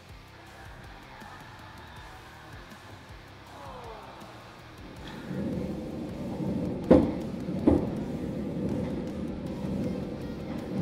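Background music, then from about five seconds in the sound of ice hockey play at the rink, with two sharp cracks a little under a second apart.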